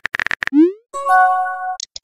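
Chat-app sound effects: rapid keyboard-typing clicks, then a short rising 'bloop' of a message popping up about half a second in, followed by a brief held synth chord.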